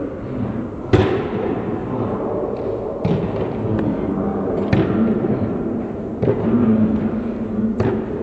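Tennis ball struck by rackets in a doubles rally: about five sharp hits, one and a half to two seconds apart, each ringing briefly in a large indoor hall.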